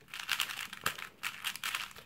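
Plastic 4x4 speedcube being turned quickly by hand: rapid runs of light clicks and clacks as the layers snap round.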